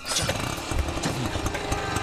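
An auto-rickshaw's small engine running.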